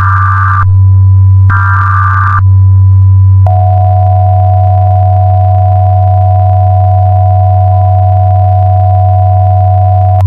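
Mock Emergency Alert System broadcast audio: two short, screeching digital header data bursts, then a loud steady alert attention tone from about three and a half seconds in, over a constant low hum.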